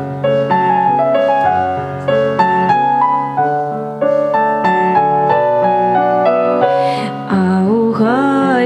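Nord Electro 3 stage keyboard on an electric piano sound, playing an instrumental passage of a Ukrainian folk song, with the notes moving in steps about twice a second. A woman's singing voice comes back in near the end.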